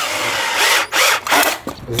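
Cordless power drill running in two short bursts, cutting off shortly before the end.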